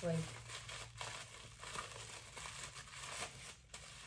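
White paper wrapping crinkling and rustling in irregular bursts as it is unwrapped by hand.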